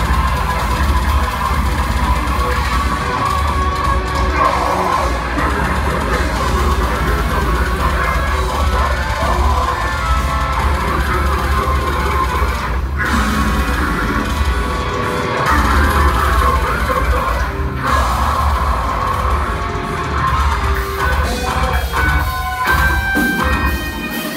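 Live technical deathcore played by a full band, loud and dense: distorted guitars, pounding drums and a heavy low end, with harsh vocals over it. The music stops briefly twice about halfway through before crashing back in.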